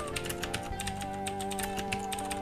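Computer keyboard being typed on, a quick run of keystroke clicks as a line of code is entered, over background music of steady held notes.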